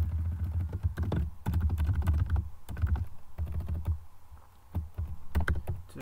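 Computer keyboard typing: quick runs of keystrokes with a dull thud under each key, easing off briefly about four seconds in and then picking up again.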